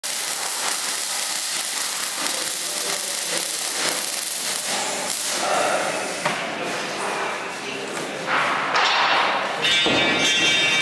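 MIG welding arc crackling and hissing steadily for the first few seconds, then uneven clatter with a knock near the middle as the work on the steel mesh frame goes on.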